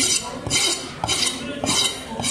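A steel knife blade scraped in quick strokes across a wooden chopping block, four short rasping scrapes about two a second.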